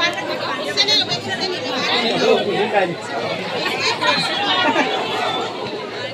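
Several people talking at once: overlapping chatter from a crowd of guests, with no single voice standing out.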